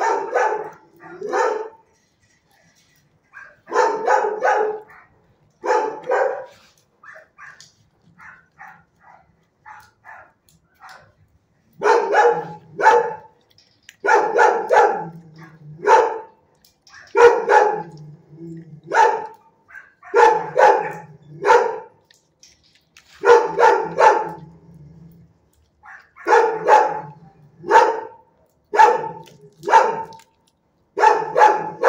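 Dogs barking in a shelter kennel, short barks in twos and threes every second or two. The barks are fainter and sparser for a few seconds near the first third, then louder and closer together.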